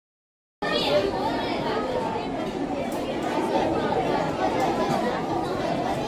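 Audience chatter: many people talking at once with no single clear voice, starting abruptly just over half a second in.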